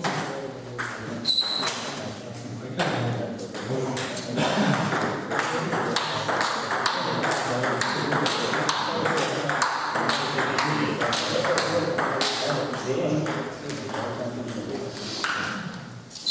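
Table tennis ball clicking off rubber paddles and the table in quick, regular hits: a rally.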